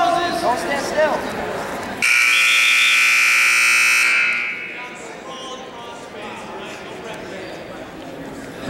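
Gym scoreboard buzzer sounding one loud, steady tone for about two seconds, starting about two seconds in: the signal that ends a wrestling period and stops the action. Before it, in the first second, there are shouted voices.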